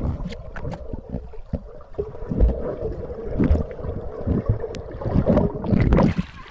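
Muffled underwater sound from a submerged phone's microphone: water churning around the phone as a low, uneven rumble, with irregular thumps and small clicks.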